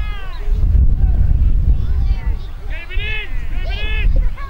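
People at a football ground shouting: high-pitched, drawn-out calls, one at the start and a louder pair near the end, over a steady low rumble.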